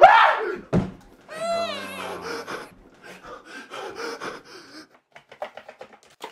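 A man screams, his voice rising, followed by a heavy thump and a long falling cry. Near the end comes a quick run of short light knocks.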